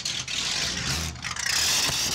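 Ford Escort rally car's V8 engine running at idle, with a high whine coming in near the end.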